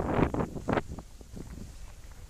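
Rushing noise of skiing downhill: wind buffeting the microphone and skis scraping over packed snow, loudest in the first second, then easing off.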